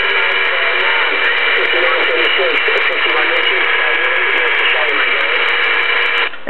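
CB base station speaker putting out steady loud static with a weak, garbled voice buried in it. A faint long-distance station is coming in on the band, too weak to make out.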